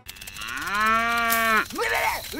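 A cow mooing: one long moo that rises in pitch and then holds steady, followed near the end by shorter calls.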